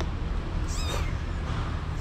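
A kitten mewing once: a short, high-pitched mew about three quarters of a second in.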